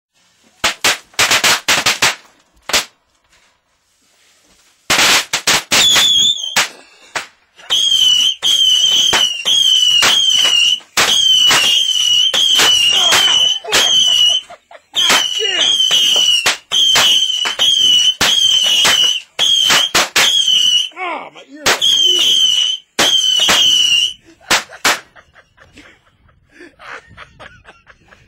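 Fireworks going off in a small wooden room. First comes a quick string of firecracker bangs. Then, for about twenty seconds, shrill wavering whistles of nearly one pitch, mixed with rapid pops and cracks, die away near the end.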